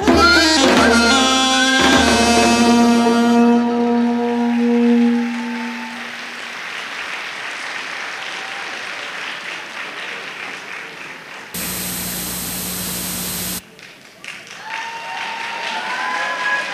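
Dance accompaniment music ends on one long held note that fades out about five seconds in, then audience applause in a large hall. Near the end a steady hum cuts in for about two seconds and stops abruptly.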